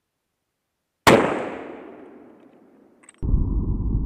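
A single rifle shot from a Blaser hunting rifle about a second in, its report dying away through the forest over about two seconds. Near the end a short click, then a steady low rumble of handling noise as the rifle and camera are moved.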